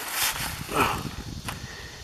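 Printed paper sheets rustling and being handled, with one sharp click about one and a half seconds in.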